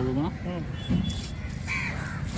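Crows cawing in short calls, two at the start and another near the end, while a steel cleaver chops through fish on a wooden block about a second in.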